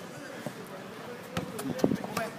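A football being kicked: a few sharp knocks in the second half, over faint voices.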